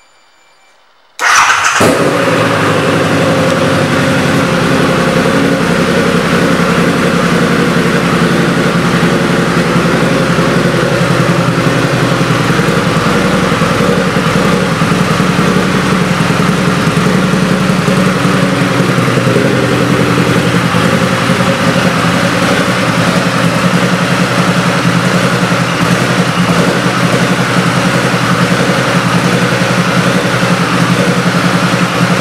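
2010 Harley-Davidson Night Rod Special's liquid-cooled Revolution V-twin starting about a second in, then idling steadily through aftermarket exhaust pipes.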